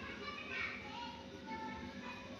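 Faint voices in the background, with no loud sound in the foreground.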